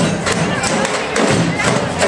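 Brazilian percussion ensemble playing a driving rhythm together: deep bass-drum beats under a steady stream of sharp stick strokes on smaller drums.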